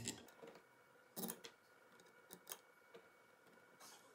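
A handful of faint, short clicks and taps of small screws being handled and started by hand into the motor-to-volute screw holes of a Grundfos UPS15-58F circulator pump, the clearest about a second in.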